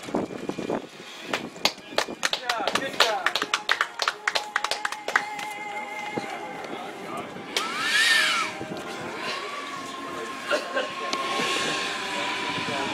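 Electric ducted fans of a large radio-controlled trijet airliner model whining while it taxis, the pitch stepping and sliding with the throttle, with a brief rush of air about eight seconds in. A quick run of sharp clicks comes in the first few seconds.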